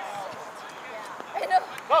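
Mostly voices: faint distant calls with steady outdoor background noise, then two loud, short shouts, about one and a half seconds in and just before the end.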